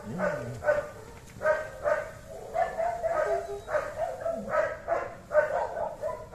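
A dog giving short, high-pitched barks or yips in quick succession, about two a second.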